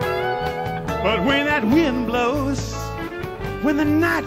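Live rock band from a soundboard recording: electric guitars, bass and drums play an instrumental passage between vocal lines, with a lead guitar working through bending melodic phrases.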